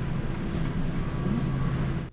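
Steady low hum of a large warehouse store's background machinery, a few low tones held throughout under a noisy hiss.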